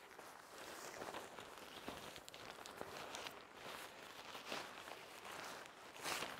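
Faint rustling of a polyester tent fly sheet being pulled over a tent, with light scattered steps and scuffs on the forest floor.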